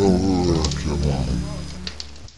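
A person's voice, drawn out and wavering in pitch, fading away toward the end.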